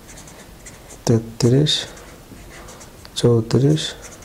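Marker pen writing numbers on paper, quiet scratching strokes, with a man saying two short words in Bengali, about a second in and about three seconds in. The voice is the loudest sound.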